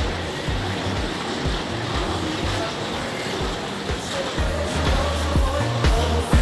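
Background music with a steady bass beat.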